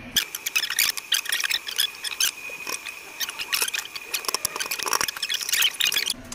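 Gritty scraping and crackling of foundry green sand being pressed, packed and smoothed by hand in a steel molding flask, a rapid run of small rasps with no pause.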